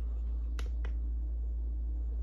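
Two short, sharp clicks about a quarter of a second apart, over a steady low hum.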